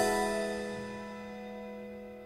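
A chord on a Roland Juno-DS keyboard, struck once and left to ring, fading slowly away.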